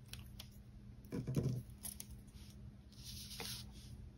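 Faint paper handling: a washi sticker strip is peeled from its sticker sheet and laid on a planner page. There is a soft bump about a second in and light rustles after it.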